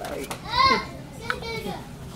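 Young children's voices: two short high-pitched calls or exclamations, one about half a second in and a softer one a little past the middle, with no clear words.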